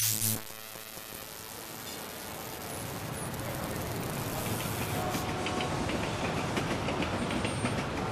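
A sharp hit right at the start, then a broad rushing street-traffic noise that swells slowly louder, with a few faint held tones in it.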